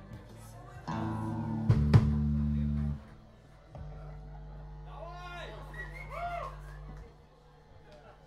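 Electric bass and guitar through amplifiers sounding two long held notes: the first louder, with two sharp clicks in it, and the second quieter, with a voice heard over it.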